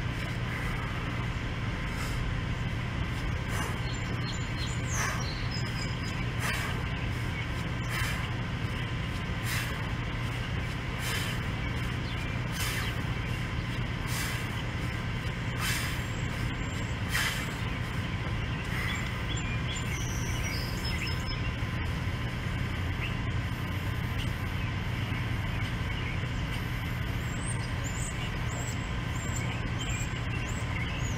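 A set of ten kettlebell swings marked by about ten sharp exhales, one every second and a half, which stop about 17 seconds in. A steady low hum runs underneath throughout.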